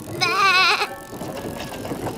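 A cartoon sheep character's voice giving a short, wavering, bleat-like laugh lasting about half a second.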